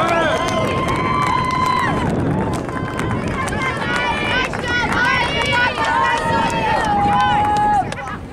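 Several voices shouting at once during rugby play, including long drawn-out yells near the start and again near the end.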